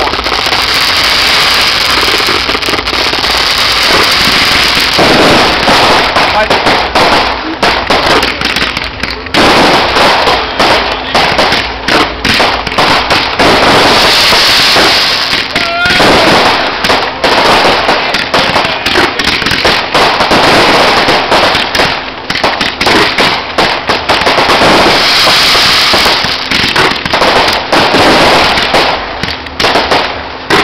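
Pyrotechnic fireworks display: a dense, continuous barrage of launches, bangs and crackling from shells and comets being fired, loud throughout.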